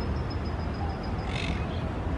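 A monk parakeet gives one short, harsh squawk about one and a half seconds in, over a steady low rumble.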